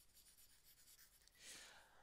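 Near silence: room tone, with one faint, brief hiss about one and a half seconds in.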